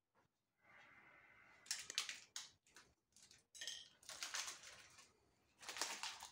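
Quiet crinkling of plastic and paper medical packaging with small clicks as gloved hands unwrap and handle disposable syringes and needles on a table, in irregular bursts starting about two seconds in.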